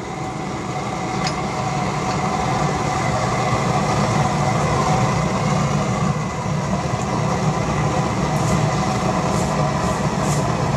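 Homemade waste oil burner running on a mix of used engine oil and vegetable oil: a steady, low rumbling roar of combustion and forced air, building slightly over the first couple of seconds and then holding level. It is running a little over-fuelled.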